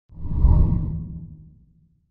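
Deep whoosh sound effect of an animated logo sting. It swells in suddenly, peaks about half a second in, then fades away over the next second.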